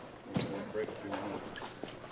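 A sharp knock with a brief high ring, followed by indistinct voices talking in the room.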